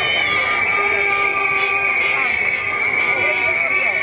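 Several whistles and horns blown by a crowd, held in overlapping steady tones with one shrill tone above the rest, over the voices of the crowd.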